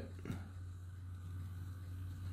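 Quiet room with a steady low hum, and one soft click about a third of a second in from a blue plastic kite-line winder being handled.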